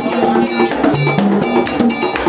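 Live Haitian Vodou ceremonial music: upright hand drums and a shaken rattle keep a quick, steady beat of sharp strikes under singing voices.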